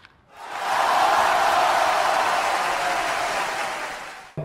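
A steady rushing noise that fades in over about half a second, holds, and fades away near the end.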